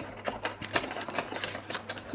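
A quick, irregular run of small, light clicks and taps, many over two seconds: handling noise from working with the planner and tape.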